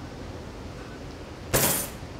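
Quiet kitchen room tone, then about one and a half seconds in a sudden loud clatter of small glasses put down hard on a stainless steel counter after a drinking toast, fading within half a second.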